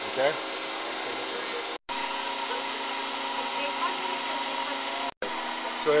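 A steady mechanical hum of running machinery, with a few steady tones in it. It cuts out completely for a moment twice, about two seconds in and again about five seconds in.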